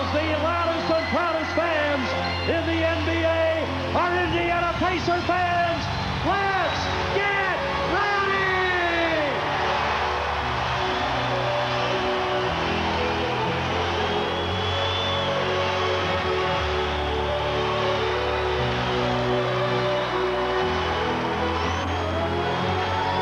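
Arena sound-system music playing for the home team's player introductions, over a cheering crowd. For the first nine seconds or so, falling whoops sweep over a steady bass; then held notes and chords carry on over the crowd noise.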